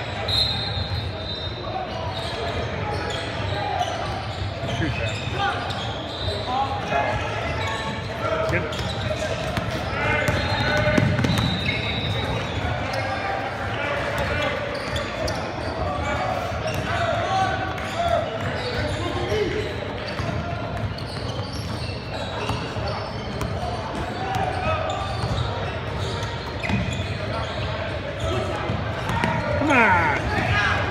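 Basketball game in a large gymnasium: a steady hubbub of players' and spectators' voices echoing in the hall, with a basketball bouncing on the hardwood and short knocks and clicks of play throughout.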